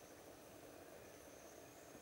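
Near silence: faint forest ambience with a thin, steady high-pitched insect drone.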